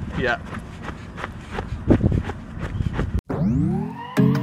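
Two people running on grass: footfalls and wind on the microphone, with a short spoken 'yeah' at the start. About three seconds in the sound cuts off abruptly and music begins with rising tones.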